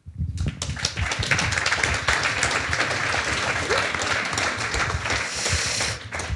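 Audience applauding: many hands clapping, starting suddenly, holding steady, then dying away near the end.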